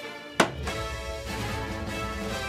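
A single sharp knock about half a second in, fitting a flipped plastic water bottle landing on a table, followed by music with a steady low bass.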